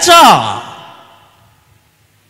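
A man's voice ends a phrase on a falling pitch. Its echo dies away over about a second, followed by a pause.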